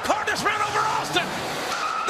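A car's tyres squealing as it pulls away fast on a concrete garage floor, with voices shouting over it.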